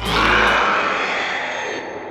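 A harsh, rasping creature hiss that starts suddenly and fades over about two seconds, a film sound effect for a skeletal 'bonie' zombie.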